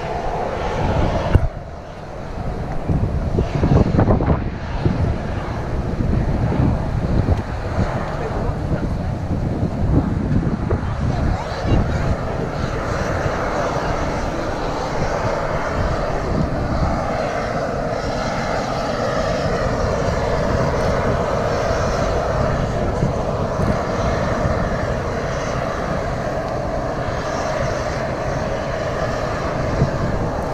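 Steam vent at the edge of a hot spring pool hissing steadily. In the first dozen seconds there is an irregular low rumbling with a thump about a second and a half in, and after that the hiss runs on evenly.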